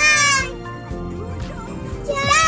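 A young child belting out a high, drawn-out sung note along with music, the note ending about half a second in while the music carries on underneath.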